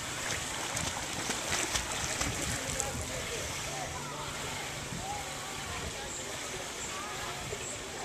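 Pool water splashing and sloshing as a swimmer flutter-kicks at the surface, with a run of sharper splashes in the first three seconds.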